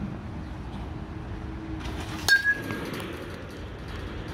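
A metal baseball bat hits a pitched ball once, about two seconds in: a sharp ping with a short ringing tone.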